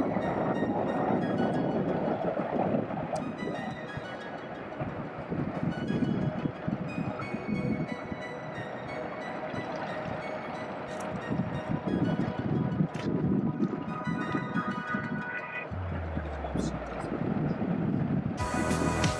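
Freight train of tank cars rolling across a steel truss railway bridge: a steady, rough noise mostly low in pitch, with a low steady tone joining near the end.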